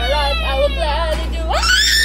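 A girl's high-pitched voice wailing and wavering up and down, then about one and a half seconds in breaking into a shrill scream that rises steeply and holds.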